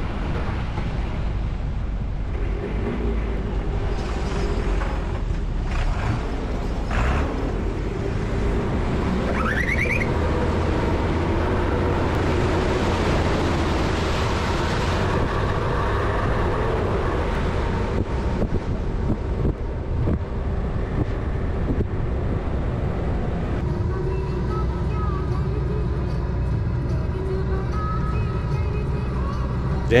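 Engine and road noise of a vehicle driving on a mountain road, mixed with background music. A short rising tone comes about ten seconds in.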